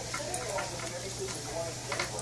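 Two small dogs eating from stainless steel bowls: soft chewing and licking with a few light clicks against the metal, under a faint background voice.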